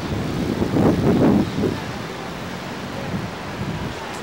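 Wind rushing over an onboard microphone as a Slingshot ride capsule swings through the air, a low rumble that swells about a second in and then eases to a steadier level.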